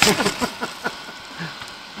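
A voice trailing off at the start, then a few short knocks and scuffs as things are handled close to the microphone.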